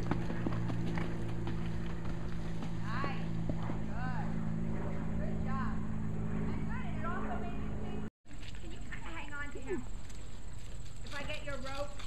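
Indistinct voices talking at a distance, with a horse's hoofbeats on arena sand and a steady low hum underneath. The sound drops out completely for a moment about eight seconds in.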